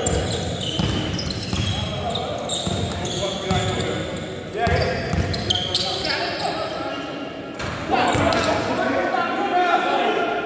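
Basketball bouncing on a hardwood gym floor during a pickup game, with players' indistinct shouts, all echoing in a large indoor hall.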